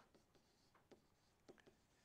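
Faint light taps and scratches of a stylus writing on a screen: several short ticks as numbers are handwritten.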